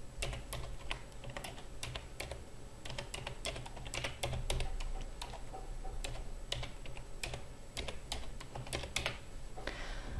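Typing on a computer keyboard: an irregular run of keystroke clicks as an email address is entered, over a steady low hum.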